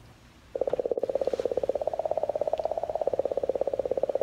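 Sonified recording of comet 67P/Churyumov–Gerasimenko's magnetic oscillations from the Rosetta spacecraft: a rapid, even train of mid-pitched popping pulses, like a woodpecker, starting about half a second in.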